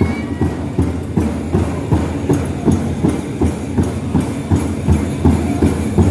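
Large powwow drum struck in a steady, even beat, roughly two and a half beats a second, with no singing over it.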